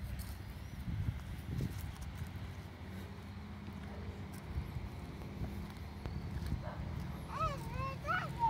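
Footsteps on a paved path with a steady low wind rumble on the microphone. About seven seconds in, a short high-pitched voice rises and falls.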